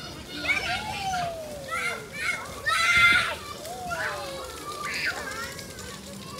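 Children's voices at play: high-pitched shouts and calls, no clear words, with a couple of long falling vocal slides.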